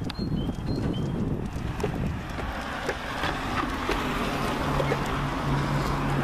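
Outdoor street ambience: wind on the microphone and distant traffic, with a few short high chirps near the start and a steady low engine hum joining in the last two seconds.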